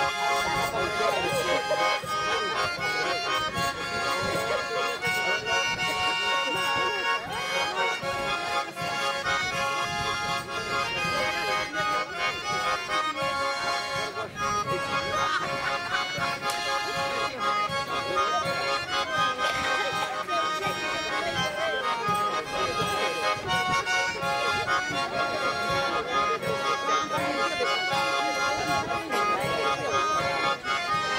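Two button accordions played together in a duet, a folk dance tune with sustained chords running without a break.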